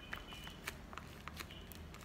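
Faint crinkling crackles of a taped paper squishy being pressed between the fingers, a handful of separate sharp clicks.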